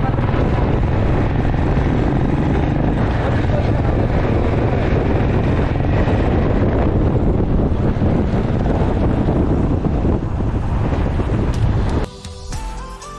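Wind buffeting the camera microphone on a moving Royal Enfield motorcycle, with the bike's engine running steadily underneath.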